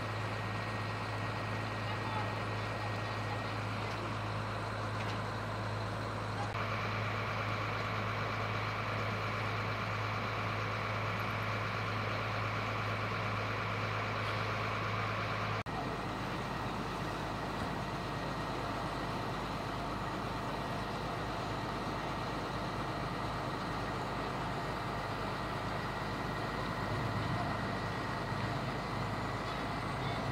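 A fire engine's motor running steadily with a low hum. About halfway through, the hum stops abruptly and a rougher, uneven low rumble follows.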